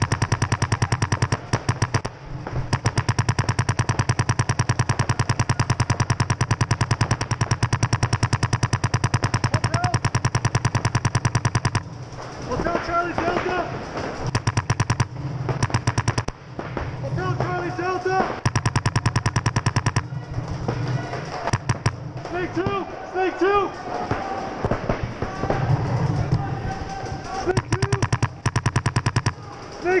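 Paintball markers firing in rapid, continuous strings, many shots a second, with several guns overlapping. After about twelve seconds the fire thins to broken strings and players' shouts come through, and dense fire returns near the end.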